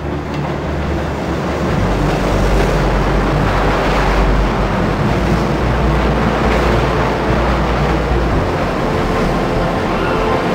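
A loud rushing noise with a deep low rumble that comes in about two seconds in and drops away near the end.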